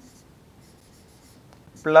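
Marker pen writing on a whiteboard: faint, short scratchy strokes.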